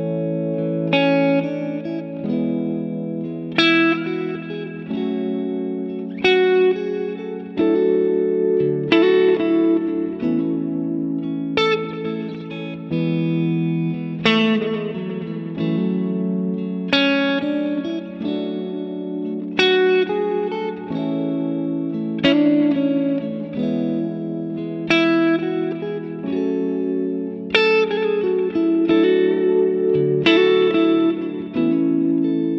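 Telecaster-style electric guitar played freely over a backing track, moving through major triad shapes on one string set and tying them together with fills from the major scale. Plucked chords and single notes ring out every second or two over sustained backing chords that change every few seconds.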